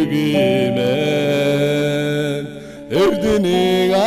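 A small group of voices singing a song together in long held notes, with a short break before a new phrase starts about three seconds in.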